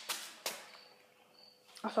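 A toy skateboard carrying an action figure knocking sharply on the floor about half a second in, fading quickly, after the tail of a similar knock just before.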